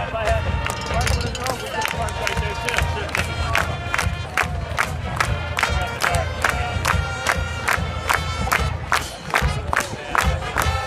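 High school marching band playing: held brass notes over a steady drum beat of about three strikes a second, with crowd noise from the stands.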